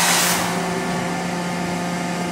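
Steady machinery hum with a strong low tone and a few fainter steady tones, opening with a brief hiss.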